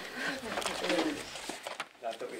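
Soft, low murmured voices and light laughter, with papers rustling and being shuffled.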